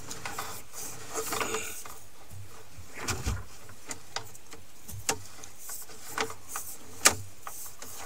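Sewer inspection camera being pushed down a drain line: its push cable and head scraping and knocking, giving scattered irregular clicks and knocks over a low steady hum.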